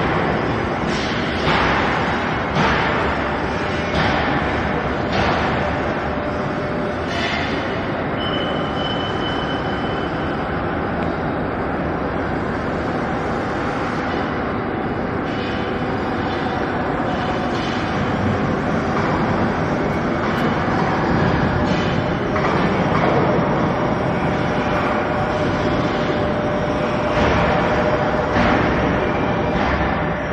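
Wire mesh belt shot blasting machine running on a test run: a steady, loud mechanical rush with irregular knocks in the first several seconds.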